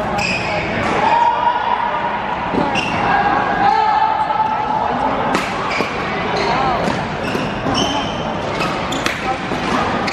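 Doubles badminton rally in a large hall: sharp racket strikes on the shuttlecock at irregular intervals, with shoes squeaking on the court surface and the sounds echoing.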